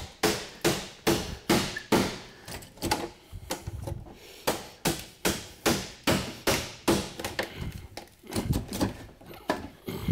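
A hammer striking a pry bar wedged between an old drawer's face and its particle-board box, in sharp blows about two a second with a brief pause near the end, to break the staples holding the face on.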